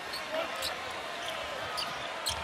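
Basketball dribbled on a hardwood court over steady arena crowd noise, with a few short high squeaks of sneakers.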